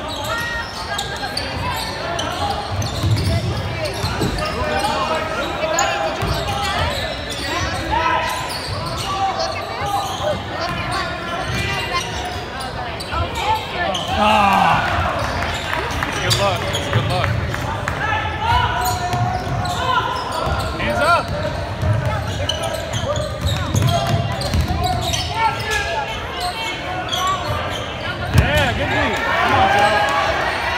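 Basketball game sounds in a gymnasium: the ball bouncing on the hardwood floor amid players' and spectators' shouts and chatter, echoing in the hall.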